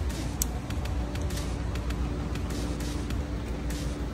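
A car engine running at idle: a steady low rumble with quick small ticks, and a faint steady hum joining about a second in.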